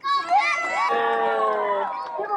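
A group of young children shouting a cheer together: many voices start at once and are held for nearly two seconds, some trailing downward at the end.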